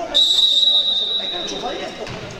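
Referee's whistle: one long, steady blast, starting just after the start and lasting nearly two seconds, over the murmur of an indoor sports hall.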